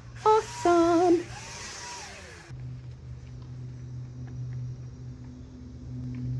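Handheld electric paint sprayer running with a steady low hum. A high hiss over it stops abruptly about two and a half seconds in, leaving only the motor's hum. A brief voice or hummed tone sounds near the start.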